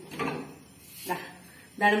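Brief wooden clatter as a wooden rolling pin is taken down from its wall rack, between short bits of a woman's speech.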